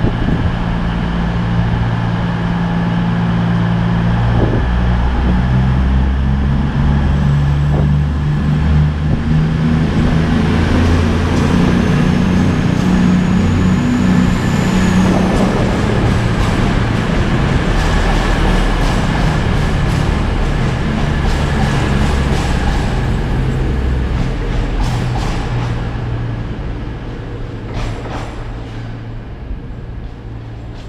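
CrossCountry Voyager diesel multiple unit's underfloor diesel engines running, then stepping up in pitch as the train pulls out past the platform. The train runs loudly past, then fades away near the end as it departs.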